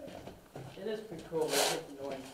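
Low, indistinct voices, with a brief rasping rustle about one and a half seconds in.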